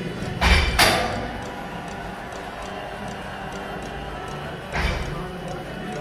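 Gym weight equipment knocking: two sharp knocks close together about half a second in and another near five seconds, over steady gym room noise.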